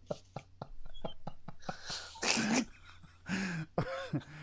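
Two men laughing: a quick run of short breathy pulses, then two louder wheezing bursts of laughter, about two seconds in and near the end.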